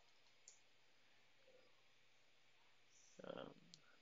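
Near silence with a few faint computer keyboard keystrokes, one about half a second in and another near the end.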